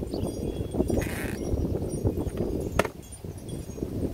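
Handling noises from battery lawn mowers: plastic knocks and rustling as the mower's rear door and mulch plug are worked, with a sharp click near three seconds in. A low rumble of wind runs under it.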